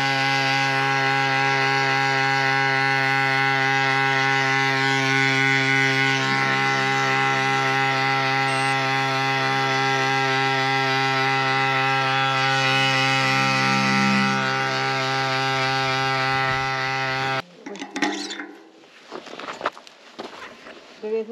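Small electric tyre pump running with a steady buzz, inflating a mountain bike's punctured tubeless tyre, then cutting off suddenly near the end, followed by a few knocks of handling.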